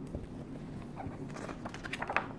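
Pages of a large hardcover art book being turned by hand: a string of paper rustles and light taps that grows busier in the second half.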